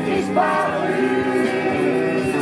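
A group of men and women singing a song together, accompanied by a strummed acoustic guitar, with several voices holding notes at once.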